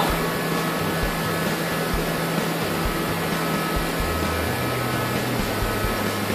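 Portable forced-air heater running: a steady blowing noise with a low hum underneath.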